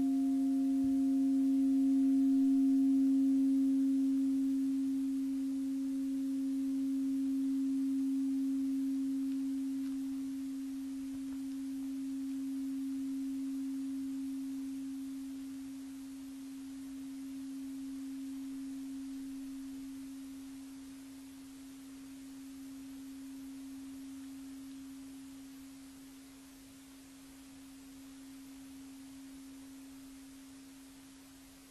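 Singing bowl ringing on after being struck: one low tone that slowly fades away with a gentle wavering pulse. Its higher overtones die out within the first few seconds.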